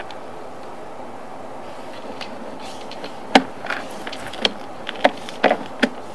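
Sewer inspection camera and its push cable being pulled back through a cast iron sewer pipe: a steady background noise with a run of about six sharp knocks and clicks in the second half.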